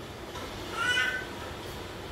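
A baby's short, high-pitched whiny vocalization, about a second long, rising then falling in pitch.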